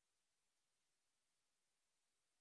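Near silence, with only a very faint steady hiss.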